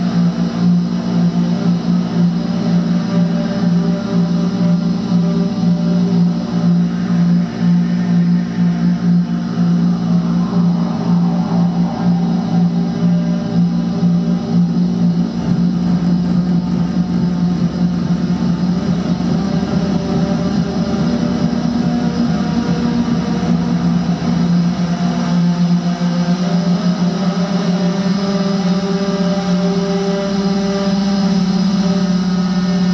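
Loud, sustained drone from electric guitar run through a chain of effects pedals, a steady low hum layered with overtones. About halfway through, a grainier, flickering texture comes in underneath.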